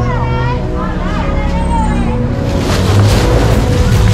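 Busy street crowd: many voices chattering over a steady low rumble of traffic, growing louder and hissier from about halfway.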